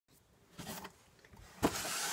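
Cardboard box being shifted and slid: a short scrape about half a second in, then a knock and a longer scraping rustle near the end.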